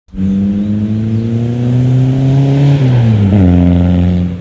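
Volkswagen Caddy Mk1 pickup's diesel engine accelerating past, its note rising slowly and then dropping about three seconds in.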